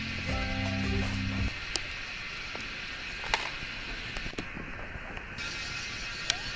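Background music that stops about a second and a half in, then a quiet steady hiss with a few sharp clicks and knocks from hands handling a DIY quadcopter and its parts.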